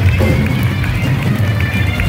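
Live rock band playing at full volume in a concert hall, heard from among the crowd, with heavy, boomy low end from the bass and drums.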